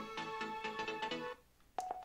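A song playing through a small portable Bluetooth speaker cuts off suddenly about two-thirds of the way in. A short beep from the speaker follows as its next-track button is pressed to change the song.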